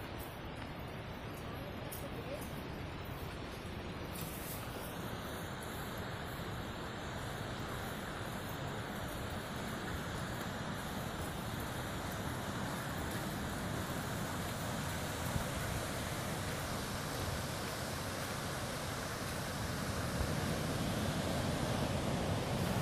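Steady rush of falling and running water from a waterfall and river, slowly growing louder.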